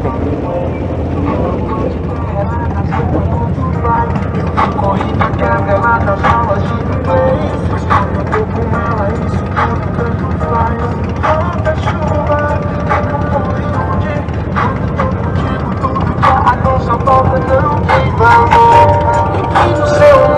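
Motorcycle engines idling in a stopped pack of bikes, a steady low hum throughout, with music playing over them from about four seconds in.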